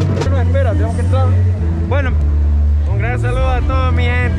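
Drumming cuts off at the very start, then people's voices come in short bursts over a steady low rumble.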